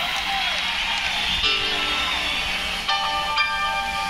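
Large arena crowd cheering in a live rock concert audience recording, with a few held instrument notes from the band coming in about one and a half seconds in and again about three seconds in, as the next song gets under way.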